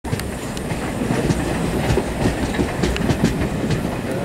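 Passenger coach running at speed, heard from inside at the window: a steady rumble of wheels on rail with irregular clicks and clatter from the wheels over the track.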